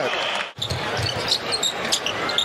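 Basketball arena sound: a ball dribbling on the hardwood court and sneakers squeaking over a steady crowd murmur. The sound drops out briefly about half a second in, at an edit cut.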